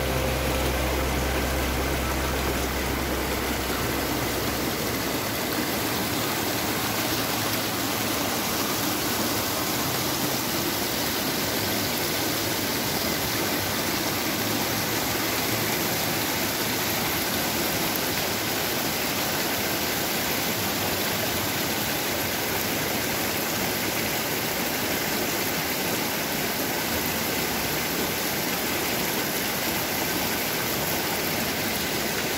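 Steady rushing of a mountain river's flowing water. Background music fades out in the first few seconds.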